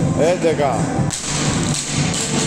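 A loaded barbell with rubber bumper plates dropped onto a rubber gym floor, landing with a single heavy impact about a second in.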